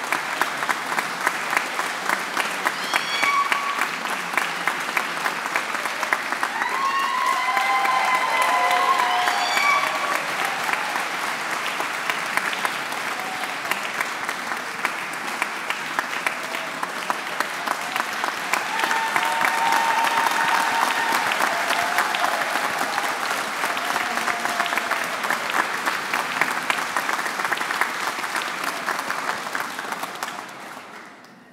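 Audience applauding in a large hall, with a few voices calling out over the clapping; the applause dies away at the end.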